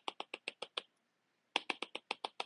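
A stylus tapping on a tablet screen in quick runs of light clicks, about ten a second, each click one dash of a dashed line. One run fills the first second and another starts near the end.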